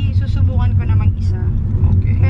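A low, steady rumble of a car heard from inside the cabin while it is being driven, with a voice over it.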